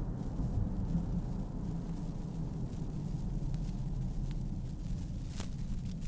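Steady low road and engine rumble inside a moving car's cabin, with a few faint ticks in the second half.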